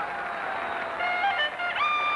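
Brass band music with tuba and trumpets. From about a second in, clear held melody notes stand out.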